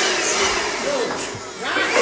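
A small electric blower running, a steady rush of air with a motor whine that shifts in pitch, dipping briefly about one and a half seconds in.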